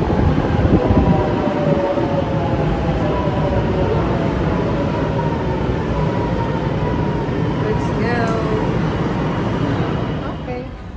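Milan metro train pulling into the station and slowing to a stop: a loud, steady rumble of wheels on rail, with several whining tones that slowly fall in pitch as it decelerates.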